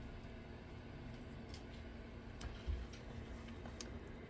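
Faint, scattered clicks and light taps from a cardboard-and-plastic blister pack being handled, over a steady low hum.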